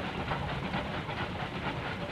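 Steam locomotive running, with a fast, even rhythm of chuffs and rail clatter.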